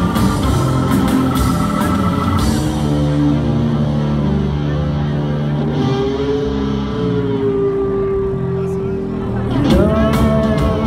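Live rock band, heard through the hall. Drums and guitars for the first couple of seconds, then the cymbals drop out, leaving held chords and a long sustained note. Near the end a rising sweep brings the full band back in.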